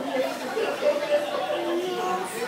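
Two young children, a boy and a girl, talking with each other.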